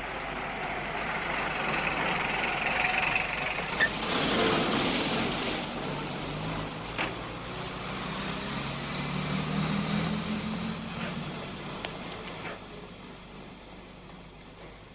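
A London black taxi's engine running as the cab pulls up at the kerb, over steady street traffic, with a short knock about seven seconds in.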